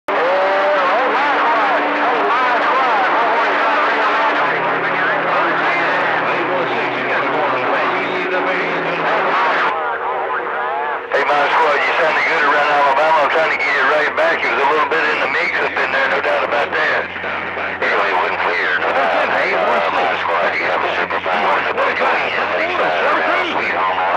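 CB radio receiving channel 28 (27.285 MHz): voices of long-distance skip stations come through static and distortion, too garbled to make out, with steady tones humming under them. About ten seconds in the signal briefly changes, the upper hiss dropping out for a second or so.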